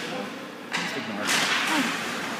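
Ice hockey faceoff: a sharp clack of sticks at the puck drop, about two-thirds of a second in, then hockey skate blades scraping the ice as play starts, with voices in the rink behind.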